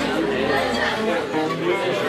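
Acoustic string jam, guitars and fiddle playing, with voices over the music.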